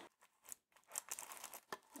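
Faint crinkling and small tearing sounds as the seal on a G-Shock watch box is peeled back and the box is opened: short, scattered rustles with a sharper click near the end.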